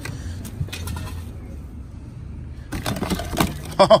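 A hand rummages through a plastic storage tote of belts and bagged gear: a few clicks and rustles in the first second. A steady low rumble runs underneath, and a voice and a short laugh come near the end.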